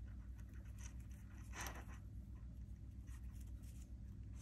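Faint rustling and scraping of fingers working jute cord, tying small knots, with a few brief scrapes, the clearest about one and a half seconds in, over a steady low hum.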